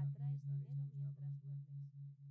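Binaural beat background track: a low steady tone pulsing about four times a second, a theta beat at 4 Hz, slowly fading. Faint layered affirmation voices run underneath.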